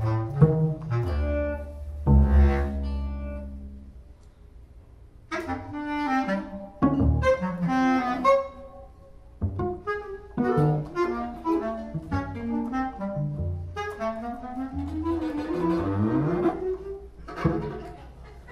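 Freely improvised music for bass clarinet, cello and guitar: a low held note, a brief lull, then busy runs of short notes, with several rising glides near the end.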